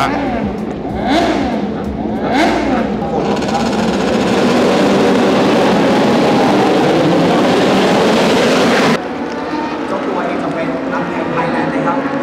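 Grand Prix racing motorcycles' engines revving as a pack on the starting grid, their pitches rising and falling over each other. From about three seconds in, the bikes pull away together in a loud, dense, continuous blare. The sound drops abruptly about nine seconds in to quieter, more distant engine sound.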